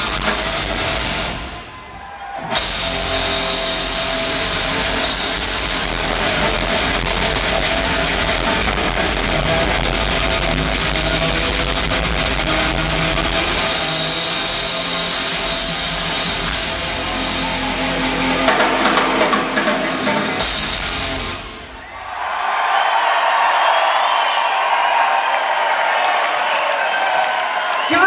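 Live hard rock band playing loud, the drum kit to the fore with guitars, dipping briefly about two seconds in. A run of sharp drum hits near the end closes the piece, and the crowd then cheers.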